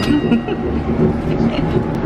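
Steady low rumble of a light-rail train carriage heard from inside the car, with passengers' chatter underneath.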